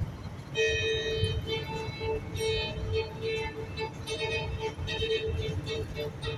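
Classical music starting about half a second in, with a repeated pulsing note and bright higher notes, playing over the low rumble of a car driving on the road.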